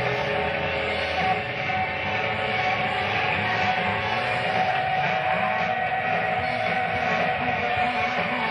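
Live rock band playing a slow, droning passage: a long held whistle-like note sits over a wavering low throb, with no drum hits standing out.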